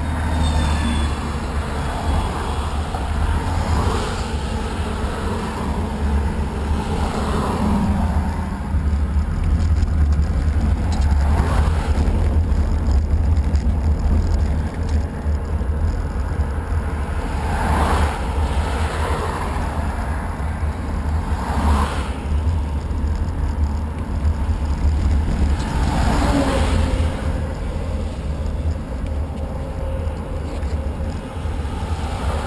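Wind buffeting the microphone as a strong, steady low rumble, over road traffic: a bus passing close near the start, then cars going by every few seconds, each a rush that swells and fades.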